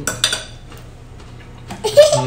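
A metal fork clinking and scraping against a ceramic bowl of rice, with a sharp ringing clink just after the start and another near the end.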